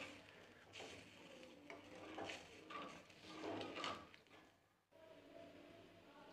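Near silence, with a few faint, short soft sounds in the first four seconds.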